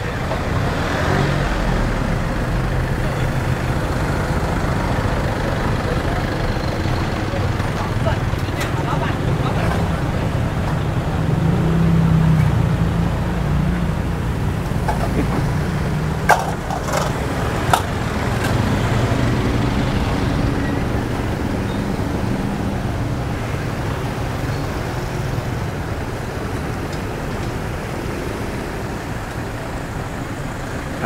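Congested street traffic: cars and motorbikes idling and creeping past close by, a steady low engine rumble that swells about a third of the way in. A couple of sharp clicks come a little past halfway.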